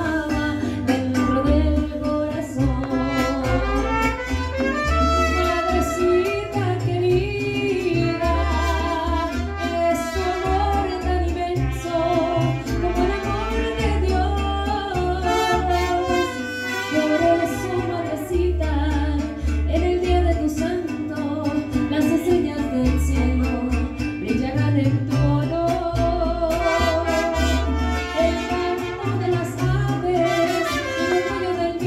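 Live mariachi band playing, with violins carrying a wavering melody over strummed guitars and deep, regular bass notes.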